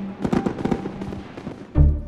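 Trailer music and sound design: a held music tone under a quick cluster of crackling clicks in the first second, then a single deep boom hit near the end, the loudest sound, after which the music changes.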